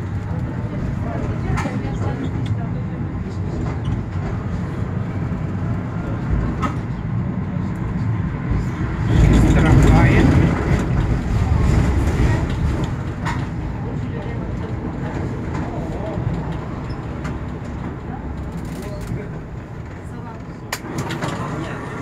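Tram running along its track, heard from inside the driver's cab: a steady rumble of motor and steel wheels on rails, with a few sharp clicks, swelling louder for about three seconds around the middle.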